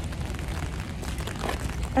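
Rain falling on an umbrella held overhead, with faint scattered drop ticks over a steady low rumble.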